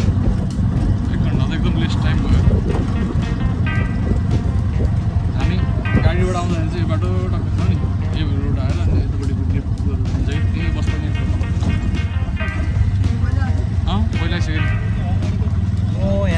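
A three-wheeler rickshaw runs steadily along a road with a constant low hum. A song with singing plays over it throughout.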